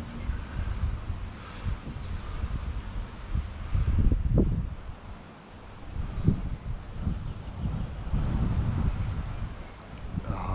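Wind buffeting the microphone: an uneven low rumble that rises and falls in gusts, easing briefly about halfway through.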